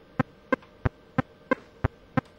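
Synthesizer notes played by FL Studio's channel arpeggiator with the gate turned far down, so each note is cut to a short, almost click-like blip. They come evenly, about three a second, six in all.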